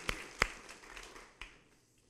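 Applause tailing off: a few sharp hand claps over a fading patter of clapping, dying away about a second and a half in.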